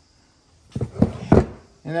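Three dull knocks in quick succession, about a second in, the sound of handling in a shop.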